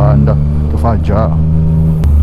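Yamaha Tracer 900 GT's three-cylinder engine with an Akrapovic exhaust, running at a steady pitch as the motorcycle cruises.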